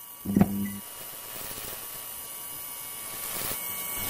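Electrical buzz and hum of a neon sign switching on: a short buzzing flicker about half a second in, then a steady hum with hiss.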